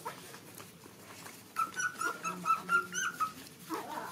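Nursing puppies whimpering: a quick run of about eight short, high squeaks starting about one and a half seconds in, then one more short whine near the end.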